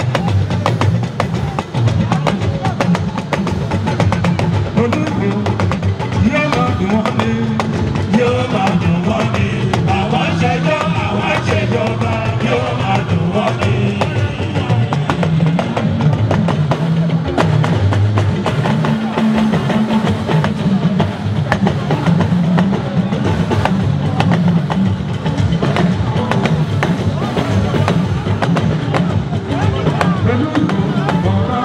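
Loud live band music with steady drums and percussion, and a voice over it through the microphone.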